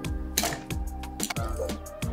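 Background music, with ice cubes from tongs clinking into a stainless steel cocktail shaker tin: a few sharp clinks, the loudest about half a second in.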